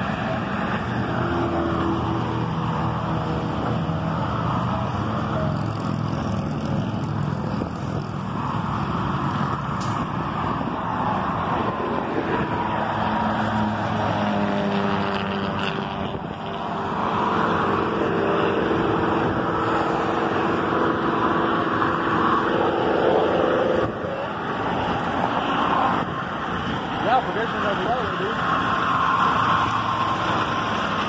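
Road traffic on a multi-lane road: cars passing one after another, a steady rush of engines and tyres.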